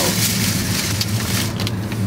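Steady car-cabin noise: a low engine hum under an even hiss.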